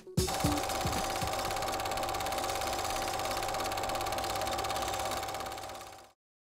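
Film projector running: a steady rapid clatter with a constant whirring tone, fading out near the end.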